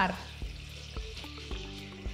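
Bacon frying in a pan with honey, a steady sizzle. Underneath is background music with a soft beat about twice a second.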